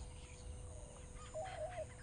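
Faint bird calls over quiet rural background ambience, two short calls in the second half.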